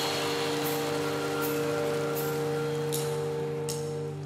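A rock band's song intro: one chord held steady and unchanging, with light cymbal ticks about every three-quarters of a second, before the band comes in.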